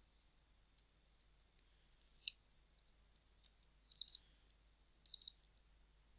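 Sparse computer keyboard clicks from code being typed: a single keystroke about two seconds in, then short quick flurries of keystrokes near four and five seconds.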